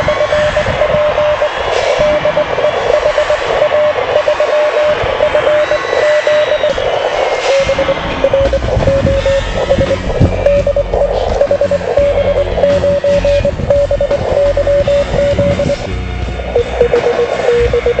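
Morse code (CW) from an amateur radio transceiver: a single tone keyed on and off in dots and dashes, over shortwave band hiss and other signals.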